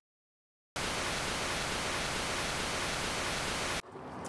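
Television static sound effect: a steady, even hiss that starts abruptly about three-quarters of a second in, after dead silence, and cuts off sharply just before the end.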